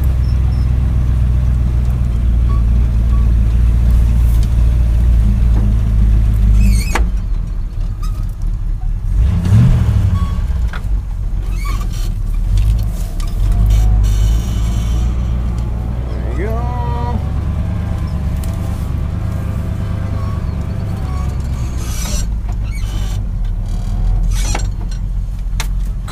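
Old Chevy dump truck's engine running in the cab while driving over a rough field, a steady low drone that rises briefly in pitch partway through. A single knock comes about a quarter of the way in, and a brief rising squeal sounds past the middle.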